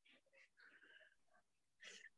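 Near silence on a video-call audio track, with faint breathy sounds.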